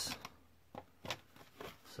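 A few short, faint clicks and crinkles of a thin vintage plastic Halloween mask being handled and turned over by hand.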